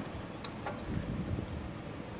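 Two light clicks from the motorcycle's ignition key being turned off and back on, over a low steady background.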